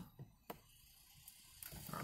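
Near silence with a faint low background hum and two faint short clicks in the first half second.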